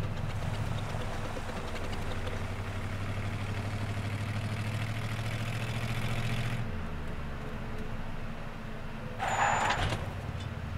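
Old-time motorcar engine running with a steady low chugging hum, its tone changing and dropping about two-thirds of the way in as the car pulls away. A short, louder rush of noise comes near the end.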